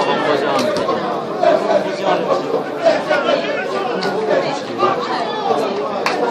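Chatter of several spectators talking over one another, a steady mix of overlapping voices.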